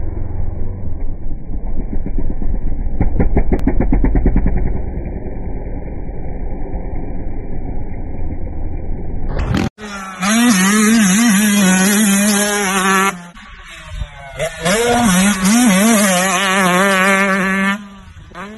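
Dirt bike engines from two clips. The first is a muffled bike engine with some rapid rattling bursts partway through. After an abrupt cut there is a loud, close dirt bike engine revving with a warbling pitch. It goes quiet for about a second and a half midway, then revs hard again.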